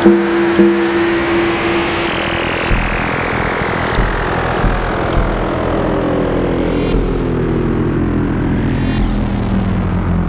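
Serge Paperface modular synthesizer playing a held two-note drone that gives way, about two and a half seconds in, to a dense noisy texture. Many slow pitch glides run through it, most of them falling, over a deep low rumble with occasional clicks.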